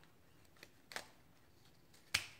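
Near silence with two faint snips of scissors cutting through a folded stack of paper coffee filters, about a second in.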